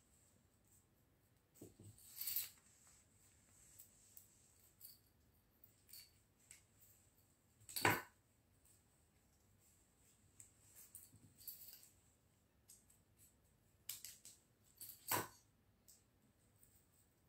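Scattered snips of small scissors fussy cutting paper shapes in a quiet room, the loudest just under eight seconds in and another near the end.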